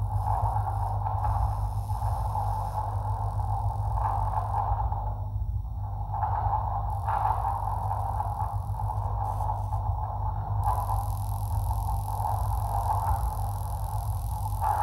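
A continuous scraping sound from a stretched line being rubbed as a sounding object, swelling and fading every second or two over a steady low hum. A brighter hiss joins about ten seconds in.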